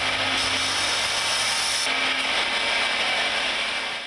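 Machine-driven abrasive wheel grinding a square steel tube: a steady, hissing grind of metal against the wheel, its highest part easing off a little about two seconds in.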